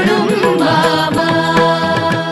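Devotional chant music: a voice singing a mantra-like melody over steady held instrumental notes, with regular percussion strikes.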